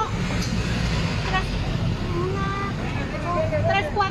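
Street traffic: a low, steady rumble of vehicle engines and tyres, strongest in the first two seconds.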